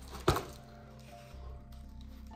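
A single sharp snap as a small box is cracked open, followed by faint background music of held notes.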